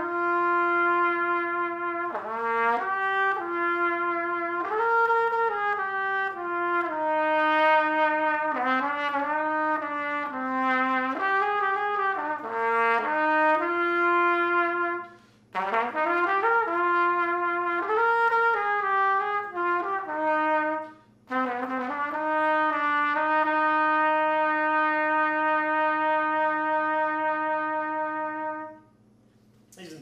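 A 1950 H. N. White King Silvertone B♭ trumpet with a sterling silver bell, played through a deep-cup mouthpiece, plays a slow, lyrical song melody in its middle register. There are two short breaths and a long held final note that stops shortly before the end.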